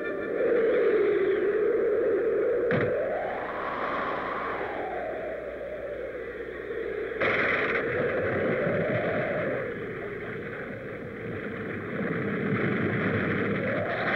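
Howling blizzard wind sound effect: a whistling howl that swells and sinks slowly in pitch over a rushing hiss, with a sharp click about three seconds in and a sudden louder gust about halfway through.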